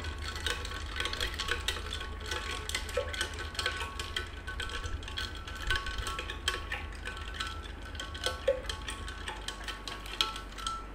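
A spoon stirring a glass pitcher of mango sherbet with ice cubes: rapid, continuous clinking and tinkling of the spoon and ice against the glass, with a light ringing.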